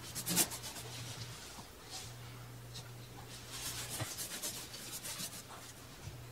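Paintbrush bristles swishing over a textured wall as paint is brushed on along the baseboard. The strokes come in a few separate swipes, the strongest about half a second in, then a quick run of strokes in the second half. A low steady hum runs underneath.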